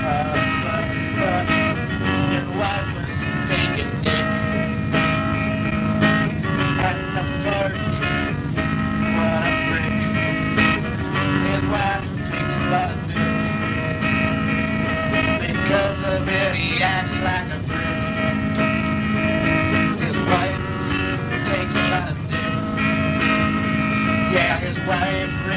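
Acoustic guitar strummed in a steady rhythm, chords changing every second or two, in an instrumental stretch of a rough live recording.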